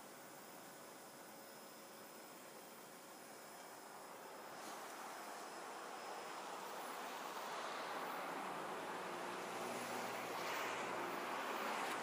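Steady outdoor background hiss with no distinct events, growing gradually louder from about four seconds in.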